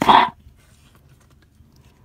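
A brief voice-like sound right at the start, then faint rustling of paper banknotes being handled and tucked into a binder envelope.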